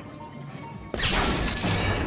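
Film sound effect: a sudden loud crash about a second in, followed by a continuing noisy rush, with music underneath.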